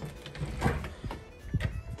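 Soft background music with a few knocks and thumps as an interior door is opened and the camera is handled; the loudest thumps come a little over half a second in and again near the end.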